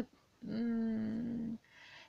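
A woman's drawn-out hesitation sound, a level 'ehh' held on one pitch for about a second.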